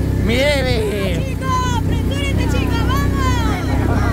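ATV (quad bike) engine running steadily, a low hum under people's voices.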